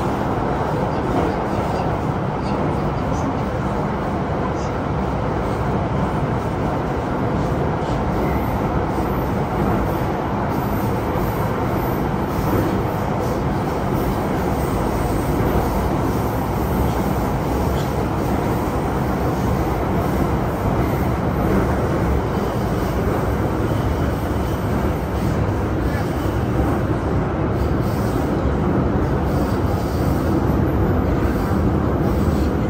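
Beijing Subway Line 10 train running through the tunnel, heard from inside the carriage: a loud, steady rumble of wheels on rail and running gear that holds without a break.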